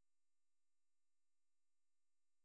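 Near silence: a pause between spoken sentences, with only a very faint steady hum at the noise floor.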